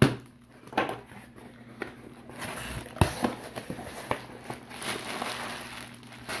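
A pocket knife slitting packing tape on a cardboard shipping box, then the cardboard flaps being pulled open: a sharp knock at the start, scattered clicks, and scraping and rustling of cardboard and plastic that grows busier toward the end.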